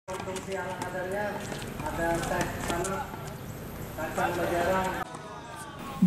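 Voices of people talking and calling out on open tennis courts, with scattered sharp pops of tennis balls being struck by rackets and bouncing during a rally. The sound dies down to a lull for the last second.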